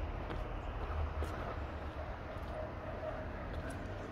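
Faint, steady low rumble of a distant Class 70 diesel freight locomotive running along the line.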